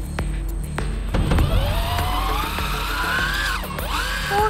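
Electric fishing reel's motor whining as it winds in line. The whine starts about a second in and rises steadily in pitch as it speeds up, drops away sharply just before the end, then starts again. Background music plays underneath.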